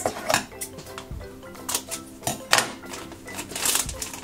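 A plastic blind-bag toy packet crinkling and tearing as it is ripped open, in a string of irregular sharp crackles with the longest tear near the end. Soft background music plays underneath.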